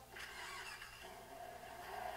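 A car engine starting up and running, faint and heard through the music video's playback on speakers; a steady hum settles in about a second in.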